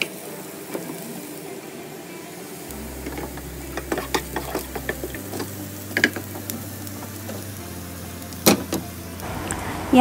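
Wooden spatula stirring chopped onions and green chillies frying in oil in a non-stick pan, with a low steady sizzle and scattered light knocks and scrapes of the spatula against the pan.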